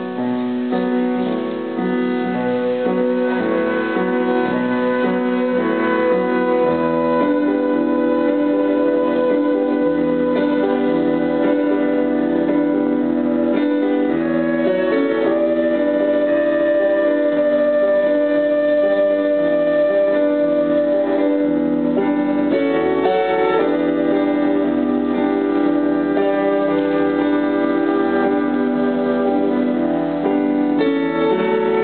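Live band playing an instrumental passage, a transverse flute carrying a melody with long held notes over the accompaniment. Low bass notes join about seven seconds in.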